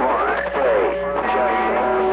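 CB radio speaker playing a crowded skip channel: overlapping, distorted sideband voices with sliding tones, and steady heterodyne whistles coming in about a second in.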